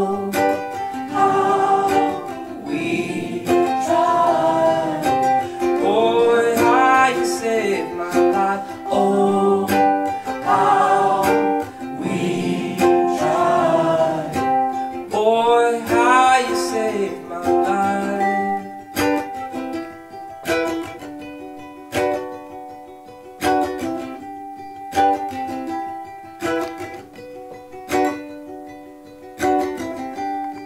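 Strummed ukulele with a sung vocal line without words, rising and falling for about the first 18 seconds. The ukulele then carries on alone with regular, evenly spaced strokes.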